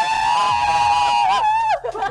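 Two women shrieking with joy in one long, high-pitched held cheer that breaks off with a falling pitch near the end.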